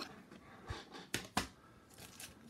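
A hard plastic card holder clicking and knocking against a wooden display stand as it is lifted off: a soft tap, then two sharp clicks about a second in.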